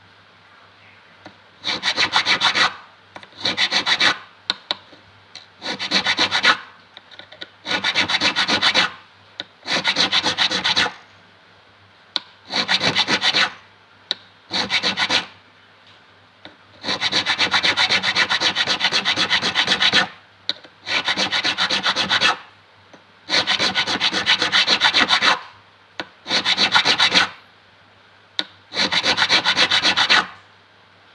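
Metal file crowning an acoustic guitar's metal fret, scraping quickly back and forth through a steel fret protector. The strokes come in about a dozen short runs, most about a second long and a few two to three seconds, with brief pauses between them.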